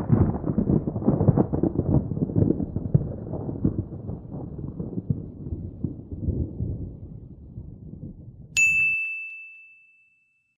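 Outro sound effects: a low rumble that slowly fades away, then a single bright bell ding near the end that rings on and dies out.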